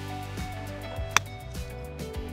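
Background music, with one sharp click about a second in: a lob wedge striking a golf ball on a short pitch shot.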